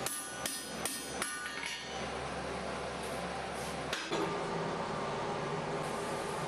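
Hand hammer striking a slitting chisel driven into a glowing iron bar on an anvil, about five ringing metal blows at roughly two and a half a second over the first two seconds. A steady rushing noise with a low hum fills the rest.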